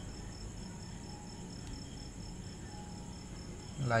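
Faint steady background hiss with a thin, high-pitched chirp pulsing evenly several times a second.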